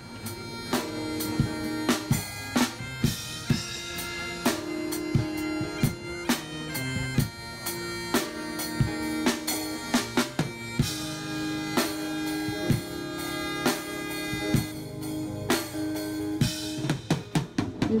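Background music: a bagpipe melody of held notes over a steady drum beat.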